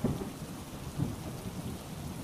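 Rain-and-thunderstorm sound effect under a story reading: a steady hiss of heavy rain with a low thunder rumble.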